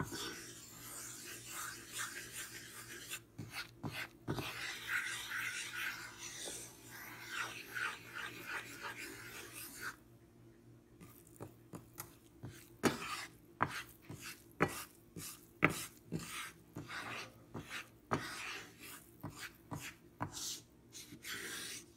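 Wooden spoon scraping and stirring a bubbling butter-and-flour roux in a nonstick frying pan. About ten seconds in the steady scraping stops, and there are scattered sharp knocks of the spoon against the pan.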